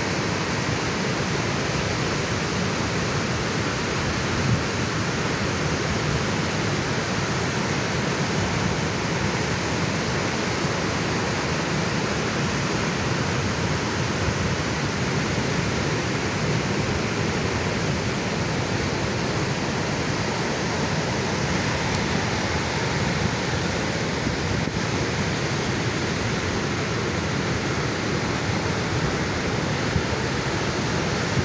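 Ocean surf: waves breaking and whitewater washing in, heard as a steady, even rush of noise with no distinct single crashes.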